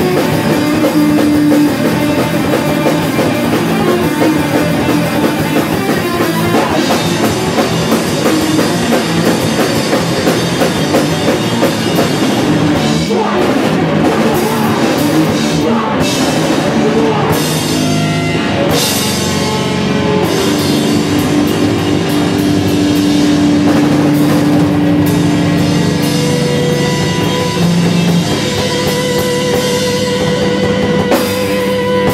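A crust hardcore band playing loud and fast: distorted electric guitar, bass guitar and drum kit with crashing cymbals, settling into held chords about two-thirds of the way through.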